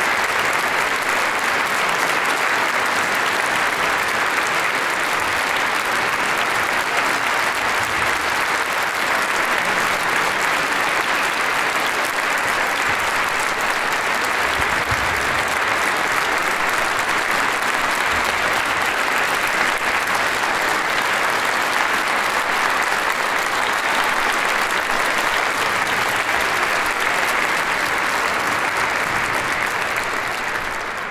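Concert audience applauding steadily, a dense, even clapping that holds at the same level throughout.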